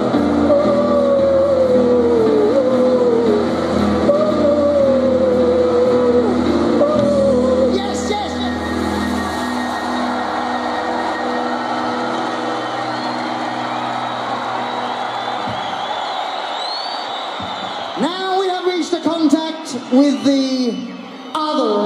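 Live stadium concert sound: sustained keyboard chords under a falling vocal 'ooh' repeated every couple of seconds, then the chords drop out about ten seconds in, leaving the crowd's noise, with a voice coming in near the end.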